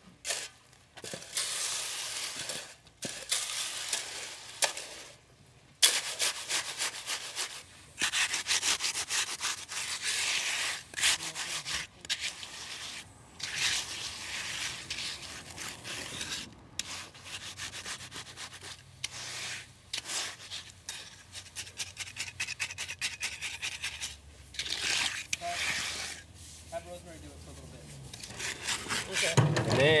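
A shovel and a metal hand float scraping and rubbing over wet concrete in repeated back-and-forth strokes, as fresh concrete is placed and floated smooth in a form.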